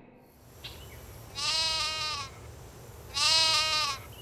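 A sheep bleating twice, two long wavering calls about a second and a half apart.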